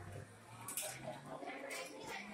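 Indistinct voices of people talking in a shop, with no clear words.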